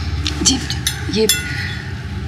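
A metal serving spoon clinks against a ceramic dish a few times, and the last strike rings on briefly.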